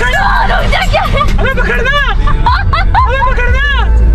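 Excited voices calling out in a string of rising-and-falling cries, loudest in the second half, over the steady low rumble of a moving car and music playing in the cabin.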